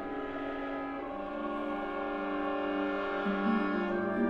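Contemporary orchestral music from an opera orchestra: sustained chords that shift slowly, with new notes entering about a second in and again near three seconds.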